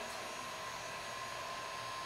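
Handheld electric heat gun running steadily, blowing hot air onto a freshly painted canvas to dry the paint: an even rush of air with a thin steady whine over it.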